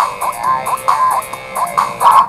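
Music from a comedy song playing through a phone's small speaker: an instrumental stretch between sung lines, a quick run of short repeated notes at about four a second.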